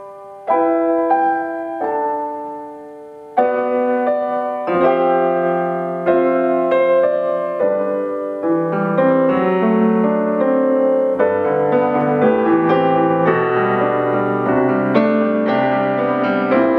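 Grand piano playing a slow passage of full chords, struck about every second and a half, that becomes denser with more moving notes in the second half.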